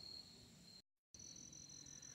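Near silence with faint, steady, high-pitched insect trilling. The sound drops out completely for a moment about a second in, and the trill comes back at a higher pitch.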